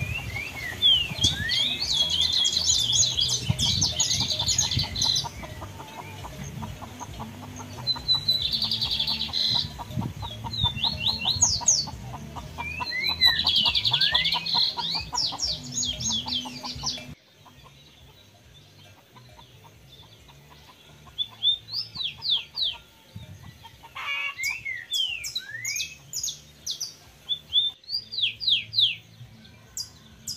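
Small birds chirping in quick sweeping notes over lower clucking from chickens. The sound drops abruptly about seventeen seconds in, and the chirping then goes on more sparsely.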